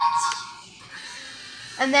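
A brief steady tone, then the faint whir of the Lego Mindstorms large motor spinning a Lego merry-go-round just after the program is started.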